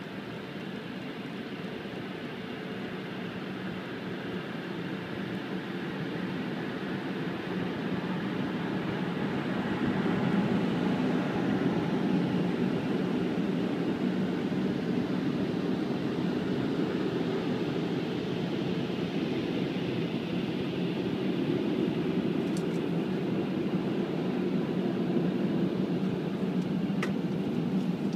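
Drying blowers of a gantry car wash running, heard from inside the car's cabin as a steady rushing air noise. It grows louder over the first ten seconds or so, then holds steady.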